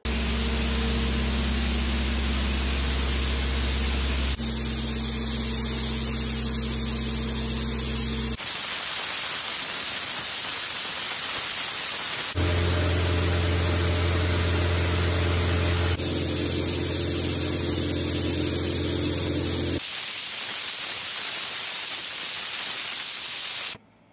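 Sandblasting: compressed air and abrasive from a Schmidt blast pot running as a steady, loud hiss through the blast nozzle. It is cut into several sections, some carrying a low steady hum beneath the hiss.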